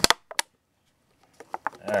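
Handling noise: a couple of sharp clicks and taps near the start, a short silence, then several more quick clicks in the second half.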